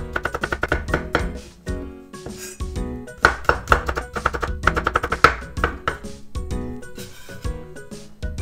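Kitchen knife rapidly chopping garlic on a wooden cutting board, in quick runs of sharp taps about seven a second with a pause between runs, over background music.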